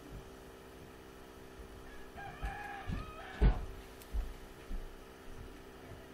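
A drawn-out bird call with a wavering pitch, lasting about a second, starts about two seconds in. A single sharp knock follows just after and is the loudest sound, with a few soft low thumps and a steady hum underneath.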